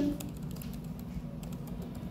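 Computer keyboard typing: a patter of light key clicks over a steady low hum.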